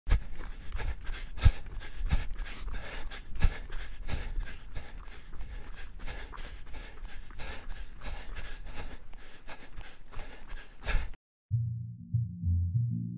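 A runner's footsteps on a dirt road: a steady, even rhythm of footfalls over a rough background, cutting off suddenly about eleven seconds in. Low music starts just after.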